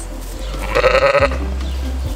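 A sheep bleats once, a short call about a second in, with a low steady hum underneath.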